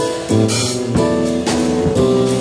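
Live band playing: drum kit strokes and cymbals over held keyboard chords and electric bass guitar notes, at a steady loud level.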